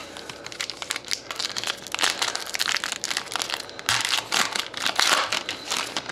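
Foil wrapper of a hockey trading-card pack crinkling as it is pulled open by hand: a dense run of crackles, loudest in the second half.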